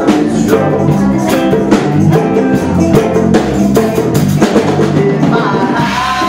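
Live band playing a rock song, with a steady drum beat and guitar over a bass line, loud and unbroken.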